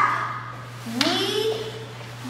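A short shouted call, as in a martial-arts drill, starting sharply about a second in, its pitch rising and then held for most of a second, over a steady low hum.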